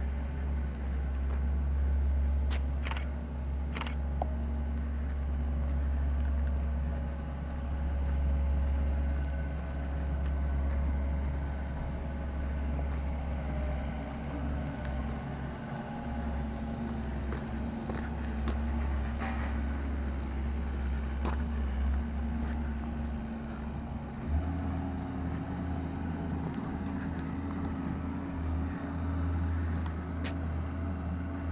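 Low, steady rumble of the vehicle carrying the camera as it moves slowly over a rough dirt street, with a few sharp clicks and rattles.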